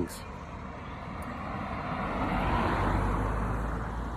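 A car passing by, its engine and tyre noise swelling to a peak about two and a half seconds in and then fading away.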